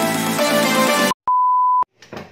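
Intro jingle music that cuts off suddenly about a second in. After a brief gap comes a single steady high beep, about half a second long.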